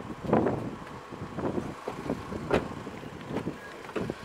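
Irregular knocks and rustles: handling noise from a hand-held camera being moved about inside a car with its doors open.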